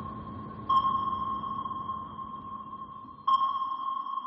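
Sonar-style ping: a steady high tone that is struck anew about a second in and again past three seconds, each time fading slowly.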